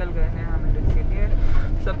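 Steady low rumble of a bus's engine and road noise heard from inside the moving bus, under a person talking.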